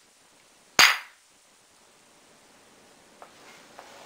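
Two hand-held rocks struck together once, a single sharp knock about a second in.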